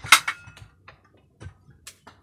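A few sharp knocks and clicks from overhead work on the wooden ceiling structure. A loud knock comes at the start, a few softer knocks follow, and a sharp high click comes near the end.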